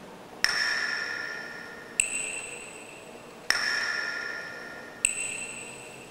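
Countdown chime sound effect: four bell-like pings, one about every second and a half, alternating between a lower and a higher pitch. Each ping rings and fades before the next. It marks the seconds of a ten-second countdown.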